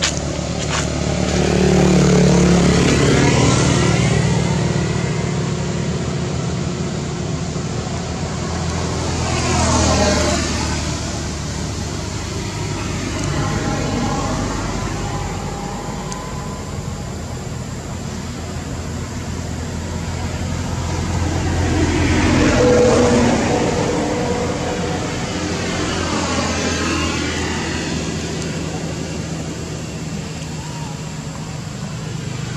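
Road traffic passing by, cars and motorbikes, one vehicle after another swelling and fading: the loudest passes come a couple of seconds in, about ten seconds in, and near the three-quarter mark.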